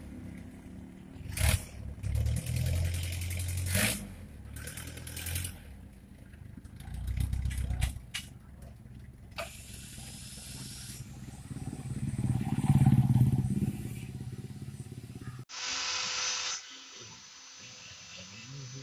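Old Willys jeep engine running with a low rumble, swelling louder several times as it is revved.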